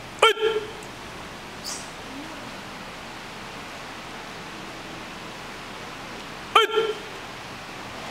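Two short, sharp kiai shouts from karate practitioners during kata, one right at the start and the second about six and a half seconds later, each rising then falling quickly in pitch. Steady hiss of room noise in between.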